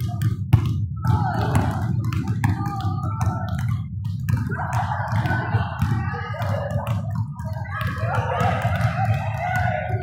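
Several basketballs bouncing on a hardwood gym floor, sharp thuds at irregular intervals, over voices and music echoing through the gym.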